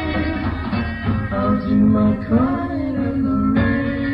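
Live 1960s beat-group band playing a slow song, with long held sung notes over the instruments. The recording is lo-fi, with a muffled, dull top end.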